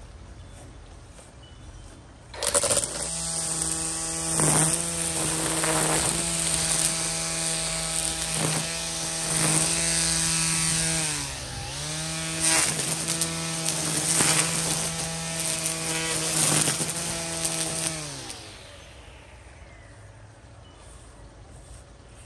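EGO Power+ battery string trimmer starting up about two seconds in, its electric motor whining steadily while the spinning line cuts through weeds, with sharp hits as the line strikes stalks and ground. The pitch sags briefly under load midway, and near the end the motor is released and spins down with a falling whine.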